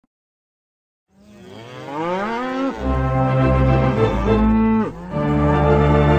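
Wurlitzer theatre pipe organ coming in after a second of silence. Its tones slide upward into sustained low chords, then sag in pitch and recover about five seconds in.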